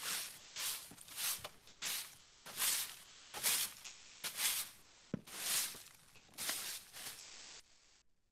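Recorded sound effect of a broom sweeping leaves: about a dozen even strokes, a little over one a second.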